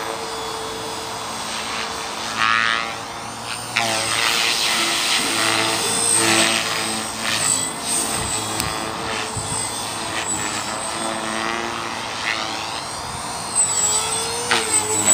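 Align T-Rex 450 Pro electric RC helicopter in flight: the whine of its rotors and motor rises and falls in pitch several times as it manoeuvres.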